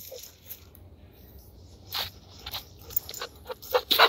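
Dogs moving about on dry leaf litter close by, with soft rustles and small clicks and one louder scuff about two seconds in.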